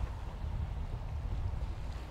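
Low, uneven background rumble with no distinct events.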